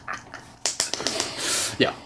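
Men laughing briefly, then a long sniff through the nose at the neck of an opened lemonade bottle, and a short voiced sound near the end.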